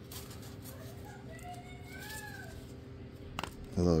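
Quiet handling of a mailed card package, paper and painter's tape being worked by hand, with a single sharp click a little after three seconds. Faint rising and falling whistled calls sound in the background through the middle of it.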